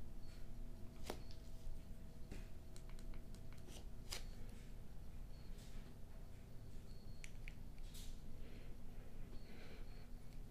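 Quiet room tone with a few scattered soft clicks and rustles from fingers handling and pressing in-ear earbuds.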